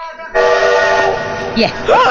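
A sudden loud blast of several steady tones at once, chord-like as from a horn, over a hiss, starting about a third of a second in. The chord cuts off after well under a second while the hiss carries on, and a short voice comes in near the end.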